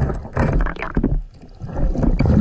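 A scuba diver breathing through a regulator underwater: a rumbling rush of exhaled bubbles about half a second in, a brief lull, then the next breath starting near the end.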